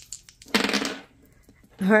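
Two small dice rattling in a cupped hand, then thrown and clattering briefly across a hard tabletop about half a second in.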